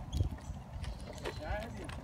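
Footsteps on an asphalt road while walking: a series of short, irregular scuffs and taps.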